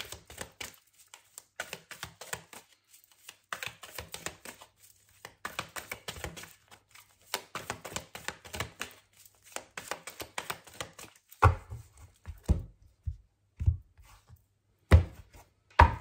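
A deck of tarot cards being shuffled by hand: a long run of quick, dense card clicks. Near the end it changes to about half a dozen separate, sharper taps as cards are tapped or put down on the table.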